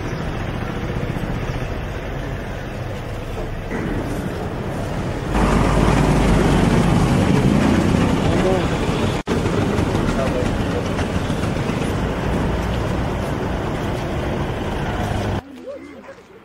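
Street ambience: steady traffic noise with people's voices in the background. It gets louder about five seconds in, breaks off for an instant near nine seconds, and drops away just before the end.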